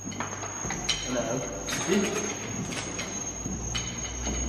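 Low electrical hum from guitar amplifiers left on between songs, with scattered clicks and knocks as guitar cables and pedals are handled. A thin, steady high whine runs underneath.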